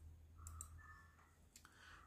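Near silence: quiet room tone with a couple of faint clicks near the start and about half a second in.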